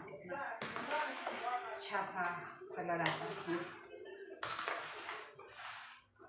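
Speech, with the rustle and slap of chopped vegetables being tossed and mixed by hand and spoon in a plastic tub, loudest in a burst near the end.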